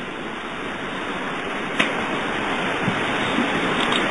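Steady rushing background noise in a pause of a sermon recording, growing slightly louder toward the end, with a single click about two seconds in.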